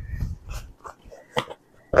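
Rustling of a tightly folded cloth bucket tote being unfolded by hand, with scattered light clicks and a sharper click about one and a half seconds in. A faint thin whine runs through the second half.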